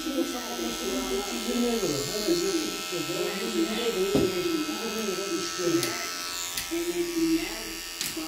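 Electric hair clipper buzzing steadily as its blade is run along the neck to even out a ragged beard line.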